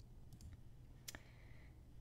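Near silence: room tone with a few faint clicks, the sharpest just after a second in.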